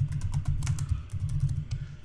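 Computer keyboard typing: a quick, continuous run of keystrokes as a two-word title is typed.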